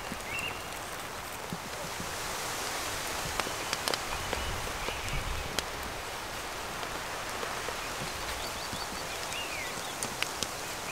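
Steady rain falling on the lavvu tent overhead: an even hiss with scattered sharp drop ticks.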